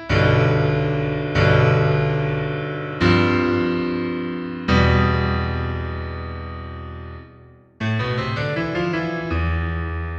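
Solo piano music: four chords struck over the first five seconds, each left ringing and fading, the last held longest. After a brief break near the eight-second mark, quicker notes follow.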